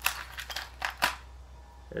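Light clicks and taps of a plastic relay connector and wire terminals being handled, about five in the first second, then a pause.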